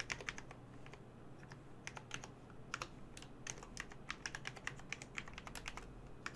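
Typing on a computer keyboard: irregular runs of quick key clicks with short pauses between them, fairly quiet.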